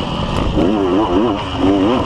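Off-road motorcycle engine revving, its pitch rising and falling several times a second as the throttle is worked over rough ground, with low rumble from wind and bumps on the camera.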